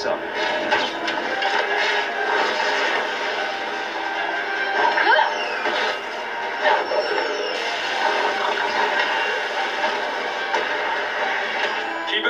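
Action-scene soundtrack of an animated superhero show heard through a television speaker: continuous music with fight sound effects, including a few rising whooshes about five and seven seconds in.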